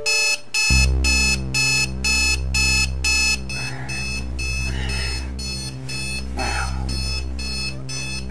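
Advance digital alarm clock going off: a steady run of high-pitched electronic beeps, about two to three a second. A steady low drone runs underneath from about a second in.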